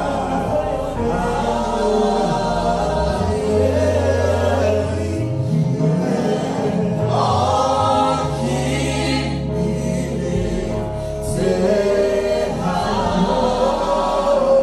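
Live gospel worship song: a male lead and backing singers on microphones sing "Let our king be lifted high" as a group, over instrumental accompaniment with long held low notes.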